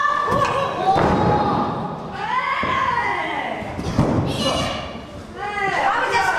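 Two heavy thuds on a wrestling ring's canvas, about a second in and about four seconds in, as wrestlers land on the mat, amid high-pitched shouting from women.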